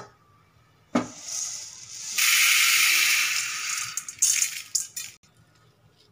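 Dry-roasted urad dal poured out of a stainless steel kadai onto a plate: a knock about a second in, then a loud rattling pour of the lentils for about two seconds, ending in a few sharp taps.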